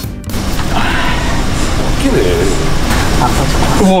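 Tyre-changing machine working a stiff run-flat tyre on an alloy wheel, making a loud, dense mechanical rattling and grinding as the tight-fitting bead is forced over the rim.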